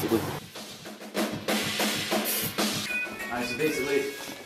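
Metal drum kit playing: a run of sharp kick and snare hits with a cymbal crash about two seconds in, followed by pitched instruments or a voice coming in near the end.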